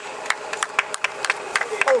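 Hands clapping close by, a run of quick, irregular sharp claps, with a voice saying "oh" just at the end.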